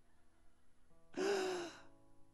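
A man's single breathy, drawn-out 'ah' through a microphone, a mock cry of pain, lasting about half a second just past the middle, over a faint held keyboard chord.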